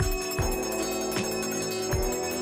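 Brass hand bell (ghanti) rung continuously during a Hindu puja, its clapper striking again and again over a steady ringing tone. Low thuds come at a regular beat beneath the ringing.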